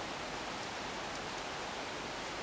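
Steady, even hiss of background recording noise, with no distinct crinkles or creases from the paper being folded.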